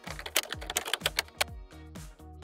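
Typing sound effect: a quick run of about a dozen key clicks, roughly eight a second, stopping about one and a half seconds in, over background music.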